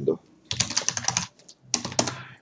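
Typing on a computer keyboard: a quick run of keystrokes starting about half a second in and lasting under a second, then a few more keystrokes near the end.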